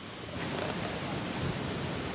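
Steady rushing noise of a sea breeze blowing on the microphone.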